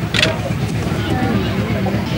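Faint background voices over a steady low hum, with one short sharp sound just after the start.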